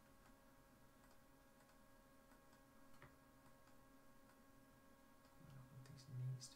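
Near silence: room tone with a faint steady electrical hum and a single faint computer mouse click about halfway through.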